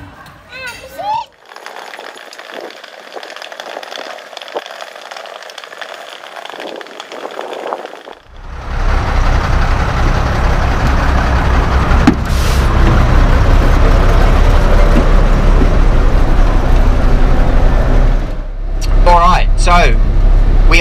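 Engine of a large four-wheel-drive off-road tour bus idling: a loud, steady low rumble that starts about eight seconds in, after a quieter stretch of faint background noise.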